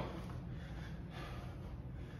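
Faint heavy breathing from exertion during clean and presses, over a low steady hum.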